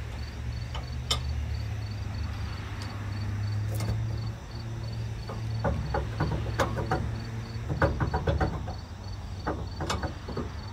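Metal clinks and clicks of a trailer hitch ball mount being worked into a pickup truck's receiver: a couple of single clicks, then a quick run of clinks in the second half. Under it are a steady low hum and an evenly pulsing insect chirp.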